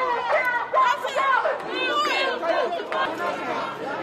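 Crowd of protesters talking and shouting over one another, several raised voices at once.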